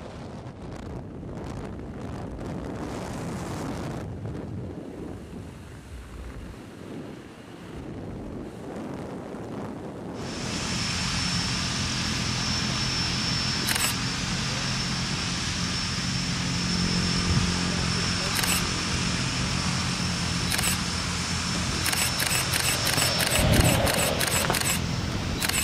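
Wind rushing over the camera microphone during parachute canopy flight. About ten seconds in, it gives way to a louder, steadier outdoor noise with a low hum and a thin high steady tone, and a few sharp clicks near the end.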